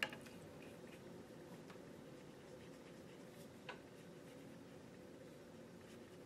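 Near silence: room tone with a faint steady hum, a short click at the very start and one faint tick a little past halfway.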